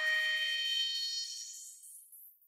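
Electronic music ending: a final held synth note, rich in overtones, fades out, its low part dying away first and the bright high end last, into silence.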